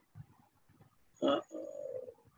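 A man's voice after a brief pause: a short throaty sound, then a drawn-out hesitant 'uh'.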